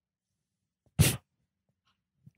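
A single short, sharp burst of breath from a man, about a second in, in an otherwise near-silent pause.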